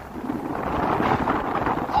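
Rushing noise of skiing downhill: skis sliding on snow with wind over the camera microphone, swelling in the first half second and then holding steady.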